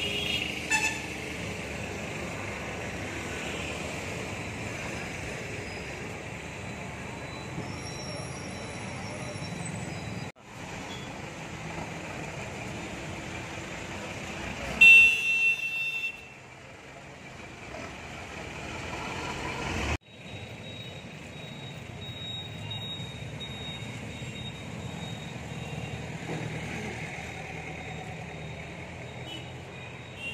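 Steady street traffic noise, broken by two sudden cuts, with a brief loud high-pitched vehicle horn toot about halfway through.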